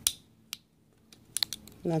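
Steel dental pick clicking against a KeyTronic keyboard's plastic key plunger as the old foam-and-foil capacitive pad is prised out: a sharp click at the start, another about half a second in, then a quick run of fainter ticks after about a second.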